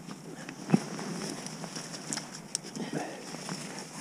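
Wet keepnet mesh rustling and clicking as fish are tipped from the net into a weigh sling, with one sharp slap about a second in.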